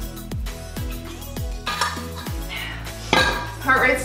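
Background music with a steady beat. Near the end, a metal water bottle clinks as it is set down on a tiled hearth.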